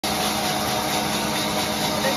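Large sawmill band saw running steadily: an even mechanical whirr with a constant low hum.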